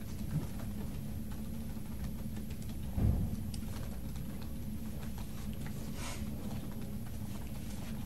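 Steady low hum and room noise of a lecture recording, with a few faint clicks and a soft low thump about three seconds in.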